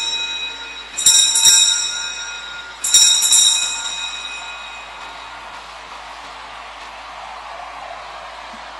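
Altar bells rung at the elevation of the chalice after the consecration. Two rings about two seconds apart, each a quick double shake, with bright ringing tones that fade out by about five seconds in.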